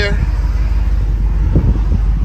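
Low, steady rumble of a 2010 Jeep Grand Cherokee SRT8's 6.1-litre Hemi V8 idling.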